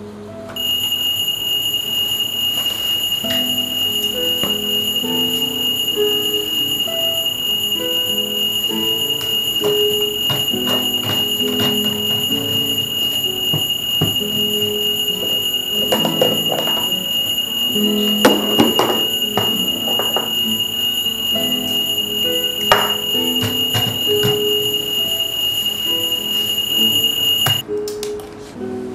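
Bedside battery alarm clock ringing with a continuous, steady, high-pitched electronic tone that cuts off suddenly near the end as it is switched off by a press on its top. Soft background music plays underneath.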